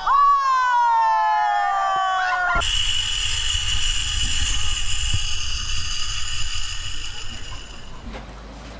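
A long whoop from a person on a whitewater raft, sliding down in pitch. About two and a half seconds in it gives way to a zipline trolley's pulleys running along a steel cable: a steady high whine over wind rumble, fading near the end.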